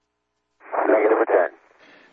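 A brief male voice call over the air-to-ground radio loop, narrow and radio-filtered, about half a second in: Capcom's call telling the shuttle crew that return to the launch site is no longer possible.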